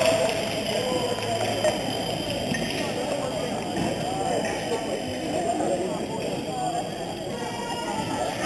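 Indistinct chatter of many voices talking at once in a large sports hall.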